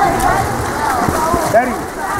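Voices shouting across a pool deck, with a man calling out a name once near the end, over the steady hiss of water splashed by swimming water polo players.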